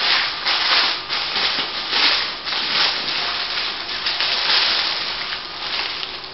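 Crinkly packaging rustling and crackling in irregular handfuls as it is handled and opened to take out a fabric scarf.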